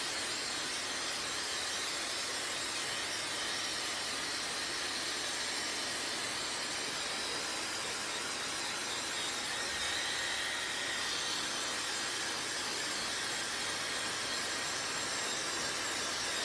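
Handheld electric hair dryer running continuously, a steady hiss of blown air with a faint high motor whine, holding the same level throughout.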